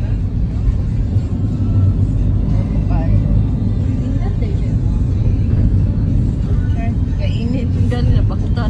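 Steady low rumble of road and engine noise heard inside a moving vehicle's cabin, with faint voices in the background.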